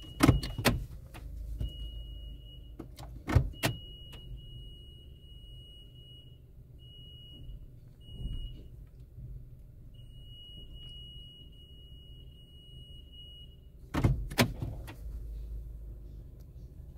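Car wash machinery heard from inside the car: a steady low hum under a high whine that starts and stops several times. Sharp knocks come just after the start, about three and a half seconds in, and near the end.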